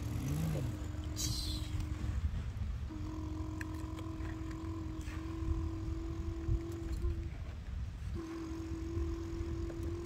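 A child humming a steady, even-pitched engine drone for a toy truck and excavator, held with two short breaks, over a low rumble. A brief scraping hiss of sand comes about a second in.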